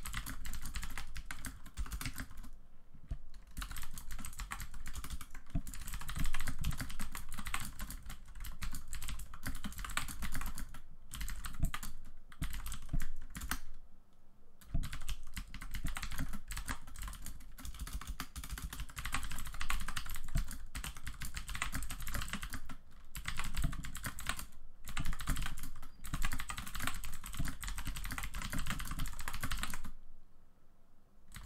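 Typing on a computer keyboard: fast, continuous runs of key clicks, broken by a few brief pauses.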